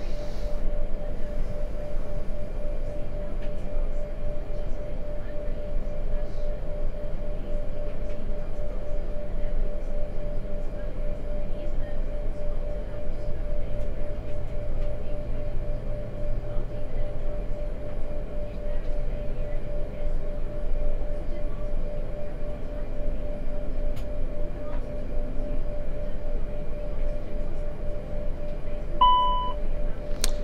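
Airbus A220 flight deck noise during the right engine's start: a steady hum with a constant tone over it. Near the end a short chime sounds, the caution for low pressure in hydraulic system 3.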